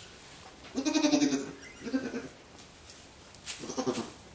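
Goat bleating three times, a wavering call about a second in that is the longest and loudest, a shorter one about two seconds in, and another near the end.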